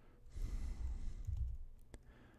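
A man's long, soft breath out, like a sigh, into a close microphone, followed by a computer keyboard key click near the end.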